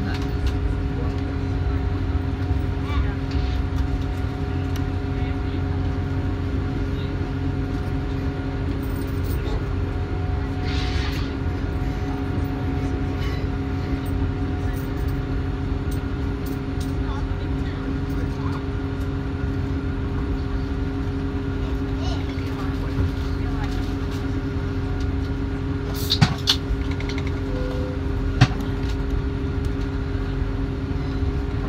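Inside a diesel train pulling away: a steady engine hum with several held tones over a low rumble of running noise, with two sharp knocks near the end.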